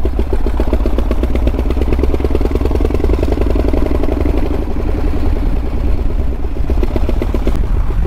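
The Flying Millyard's 5000cc V-twin, built from Pratt & Whitney Wasp radial aero-engine cylinders, running at very low revs under way: a steady, even beat of slow firing pulses. It sounds like it's ticking over, basically at idle.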